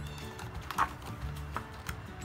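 A picture book's paper page being turned, with a brief rustle about a second in and a couple of light taps later, over soft background music.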